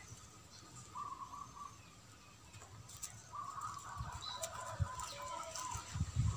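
A bird calling faintly in the background, a short call about a second in and a longer run of calls from about three to five and a half seconds. A few soft low thumps come near the end.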